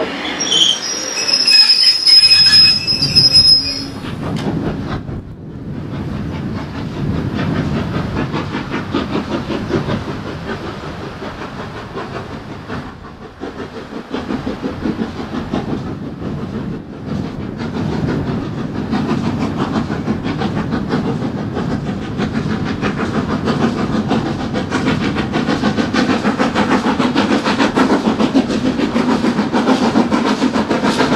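Somerset & Dorset 7F 2-8-0 steam locomotive No. 53808 working hard up a curving grade with a train of coaches, its steady exhaust chuffing and the coaches' wheel and rail noise growing louder as it approaches. In the first few seconds, before this, a departing train at a station gives high shrill tones.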